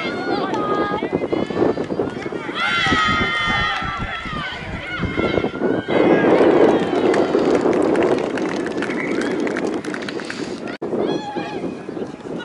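Sideline rugby spectators shouting and cheering as play runs, with loud, high yells about three seconds in and a swell of crowd noise a little after halfway.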